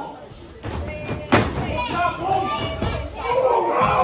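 One sharp smack about a second and a half in, as a blow or a body lands in a wrestling ring. Around it, a small live crowd calls out with children's high voices, echoing in a hall.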